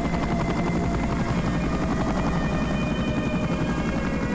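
A Mil Mi-8/Mi-17-type helicopter flying low and close. Its rotor chops rapidly and steadily under a steady turbine whine.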